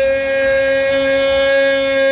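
A football commentator's voice holding one long, steady, high shout, drawing out a single word in excitement.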